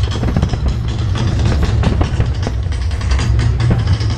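Aerial firework shells bursting and crackling in quick succession over a steady deep rumble, with music.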